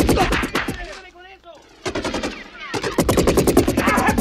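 Rapid automatic rifle fire as a film sound effect, in two bursts: the first breaks off about a second in, and after a quieter gap of nearly two seconds the firing starts again near the three-second mark.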